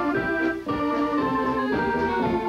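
Polka band playing a polka, led by a piano accordion holding sustained chords, with sousaphone and drums keeping the beat underneath; the band breaks off for a moment a little past half a second in.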